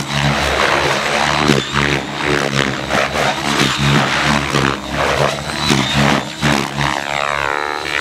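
Align T-Rex 700X electric RC helicopter in flight: its rotors and motor run loud and steady, the sound surging and dipping as it manoeuvres. Near the end a sweeping whoosh as it climbs close past.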